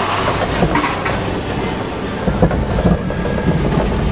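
Loud, steady mechanical rumble and clatter with scattered knocks throughout.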